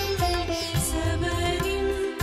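Background music: a held, gliding melody line over repeated low bass notes.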